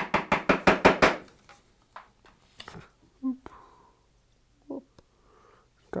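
Mallet tapping a narrow chisel into hardwood to chop out dovetail waste: a quick run of light strikes, about seven a second, over the first second, then a few scattered single taps. The chisel is tapped a little too far and gets stuck.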